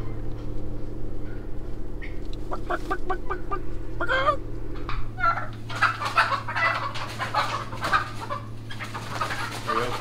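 Chickens clucking and squawking, a few calls early and a dense agitated flurry from about halfway on, as the hens are freaking out while being caught. A steady low hum runs underneath.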